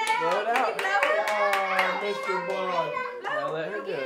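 Hand clapping with excited, cheering voices of women and a child.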